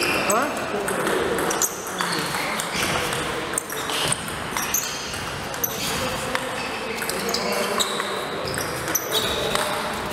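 A table tennis rally: the celluloid ball clicks sharply off the rubber rackets and the table, stroke after stroke, over a background of voices.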